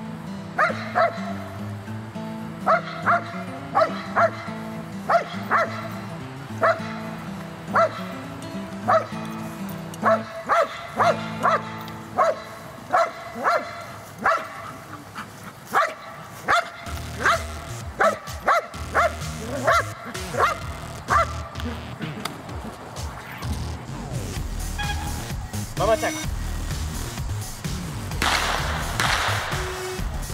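A dog barking over and over in a steady series, roughly one to two barks a second, with the barks stopping about two-thirds of the way through. Background music plays underneath throughout.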